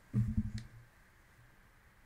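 Laptop keyboard keystrokes: a quick run of low clicks in the first half second, then quiet.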